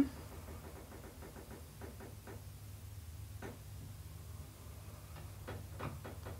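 Faint, irregular clicks of a computer mouse being clicked and scrolled while a web page is navigated, over a low steady hum.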